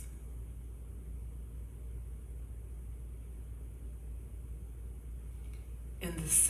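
Quiet room tone with a steady low hum and faint hiss; no bowl is sounding.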